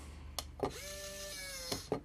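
Small DC gear motor in the base of an OWI Robotic Arm Edge, run straight off a 3-volt source, turning the arm for about a second with a steady whine that sags slightly before it stops. Clicks from the wire making contact come just before it starts and as it stops.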